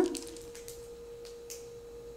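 A steady, faint single-pitch hum held at one pitch, over quiet room tone, with a couple of faint light clicks.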